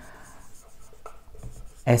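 Marker pen writing on a whiteboard: faint scratchy strokes as the word is written out.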